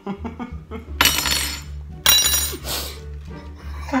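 A metal spoon knocking twice against a frying pan and egg, about a second apart. Each strike gives a bright clink that rings on briefly.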